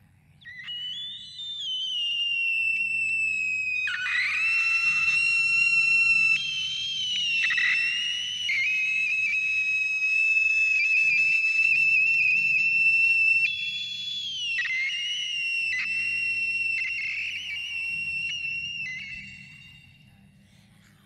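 Live electronic music: a high, whistle-like sustained tone that holds and glides between pitches, over a soft low pulsing bass. It builds up in the first couple of seconds and fades away near the end.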